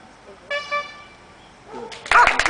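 Two short toots of a horn in quick succession, each a steady flat pitch.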